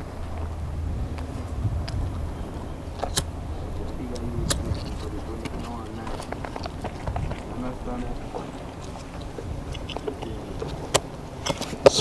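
Split logwood sticks being laid and knocked together on a small fire pile, giving a few sharp wooden clacks. Under them runs a low steady rumble, with faint voices in the background.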